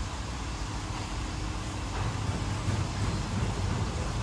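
Mark VII SoftWash XT rollover car wash running: a steady low mechanical hum under an even hiss, with no sudden events.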